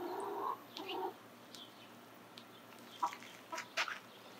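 Faint clucking of backyard hens in the first second or so, followed by a few soft clicks.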